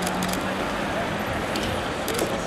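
Murmur of a group of people talking, over steady road traffic noise.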